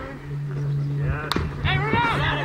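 A baseball bat striking a pitched ball once with a sharp crack about a second in, followed at once by spectators and players shouting as the batter runs.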